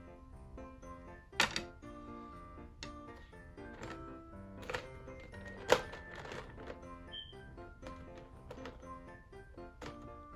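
Background Christmas music playing throughout, with sharp plastic clicks and clatter of small plastic toy figures being rummaged in a plastic jar and set on a table. The loudest clicks come about a second and a half in and near six seconds.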